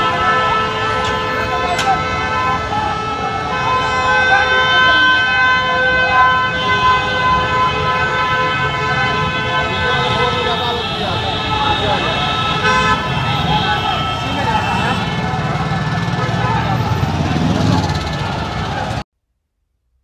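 Many vehicle horns honking in long overlapping blasts, over the shouting of a large crowd and street noise. It all stops abruptly near the end.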